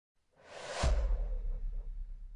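A whoosh sound effect that swells up and peaks about a second in, where a low boom comes in. The whoosh and boom then fade away together.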